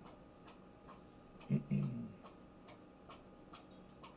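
A man clears his throat twice, about a second and a half in, over faint, steady ticking at about two ticks a second.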